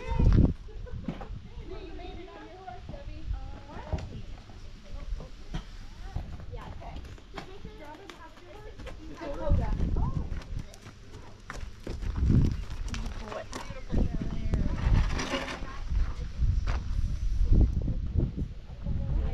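Indistinct chatter of several people around a horse corral, with horses shifting and stepping on packed dirt and scattered low thumps.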